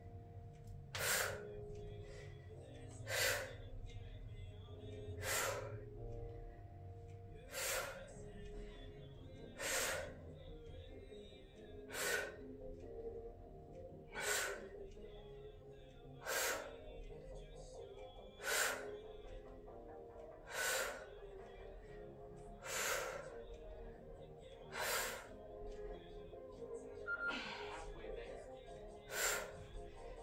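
A woman's sharp, forceful breaths during kettlebell squats, one about every two seconds, over quiet background music.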